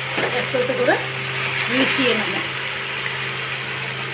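Raw mango pieces sizzling in oil in a large metal kadai while a metal spatula slowly turns them, over a steady low hum.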